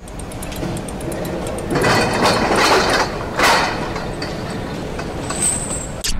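Mechanical sound-effect sting for an animated gear logo: rapid even ticking and grinding like turning machinery, with two louder noisy swells about two and three and a half seconds in.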